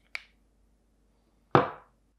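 A faint click, then a louder knock about a second and a half in: a plastic bulkhead fitting being handled and set down on a countertop.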